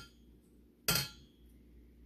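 A single sharp clink of a metal kitchen utensil against a stainless steel mixing bowl about a second in, with a short metallic ring after it.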